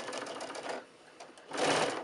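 Electric sewing machine stitching through layers of quilted fabric and batting: a fast, even run of needle strokes that stops about a second in. A couple of faint clicks and a brief soft noise follow near the end.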